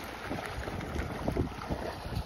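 Wind buffeting the microphone in a low rumble, with faint splashing from dogs wading and playing in shallow water.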